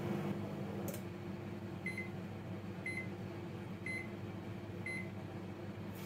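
Microwave oven running with a low hum, a click about a second in as the cycle ends, then four short high beeps about a second apart signalling that the heating time is up.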